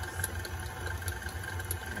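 KitchenAid tilt-head stand mixer running steadily, its beater churning thick banana bread batter in the stainless steel bowl: a low, even motor hum with faint ticks.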